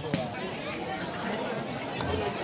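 Background chatter of spectators and players, indistinct voices at a moderate level with no single voice standing out.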